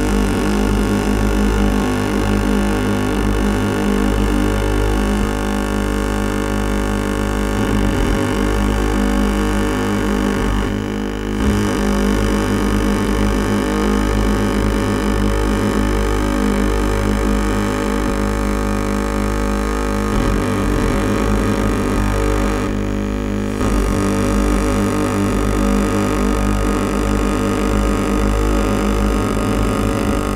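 Dense, steady amplified drone of many overlapping held tones over a strong low hum, made through long thin rods that three performers hold at their mouths and rest against one condenser microphone. The upper tones thin out briefly twice.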